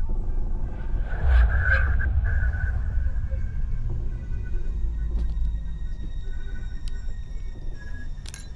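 A horror film soundtrack's low rumbling drone swells about a second in, with faint sustained high tones and a few light clicks over it.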